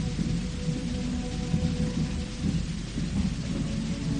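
Opera orchestra in a low, rumbling passage, with dense bass energy and faint held notes above, under the hiss of an old live recording.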